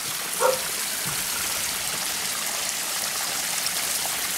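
Small pump-fed backyard waterfall running, water splashing steadily into the pond below.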